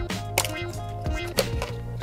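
Background music with a few sharp clicks from handling the opened Oculus Quest 2 headset as its mainboard is lifted out, the loudest about one and a half seconds in.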